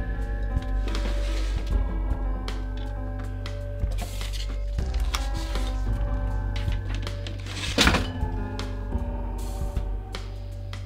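Background film-score music: sustained notes over a deep bass, with chord changes every few seconds. A single loud thump about eight seconds in.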